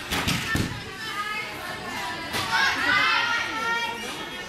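Young female voices chattering and calling out in a gym hall. Near the start there are a few sharp thumps from a springboard mount onto the uneven bars.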